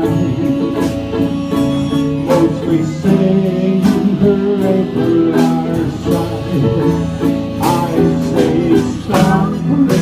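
Live jam-session music: guitars and other plucked string instruments playing a country-style tune together.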